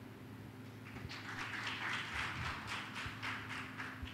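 Audience applauding briefly: a patter of many hand claps that starts about a second in and stops just before the end.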